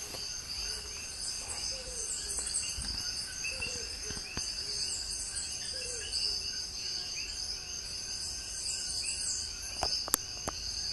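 Rainforest insect chorus: a steady high-pitched drone with many small chirps layered over it, and a single click near the end.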